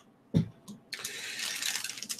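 Handling noise as items are picked up from a table: a knock about half a second in, a lighter knock, then about a second of rustling.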